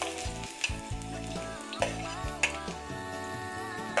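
Chopped garlic sizzling as it drops into hot oil in a wok, with three sharp clinks of a metal spoon scraping food off an enamel plate.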